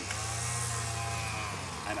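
A motor running, a steady low hum that dips slightly in pitch and eases off about a second and a half in, with a brief hiss at the start.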